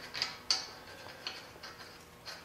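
A few light, irregular metal clicks from the suspension hardware as the lower ball joint is fastened back to the steering knuckle by hand.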